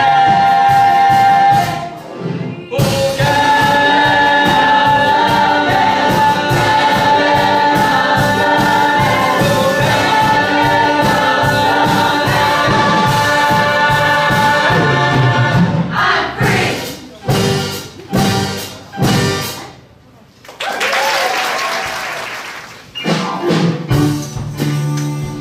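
A stage-musical cast singing together in chorus over accompaniment, holding long notes, then closing the number with a few short, separate chords. Audience applause follows briefly near the end.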